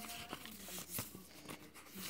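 Faint rustling and a few light taps of paper as the pages of a handmade hardcover journal are turned.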